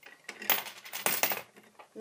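Coins clinking and clattering against each other in a Lego coin pusher, a quick run of metal clinks that starts about half a second in and lasts about a second.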